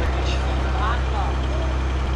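A steady low hum that holds an even pitch and level, with a faint voice in the background about a second in.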